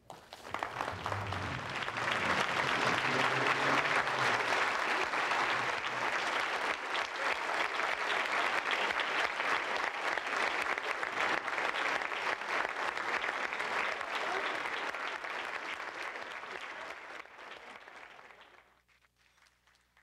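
Large banquet audience applauding after a speech: sustained clapping that swells over the first couple of seconds, holds steady, then dies away near the end.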